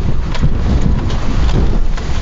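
1993 Ford Explorer driving slowly through a large pothole on a rough dirt road: a steady low rumble of road and suspension noise with wind buffeting the microphone and a few light knocks.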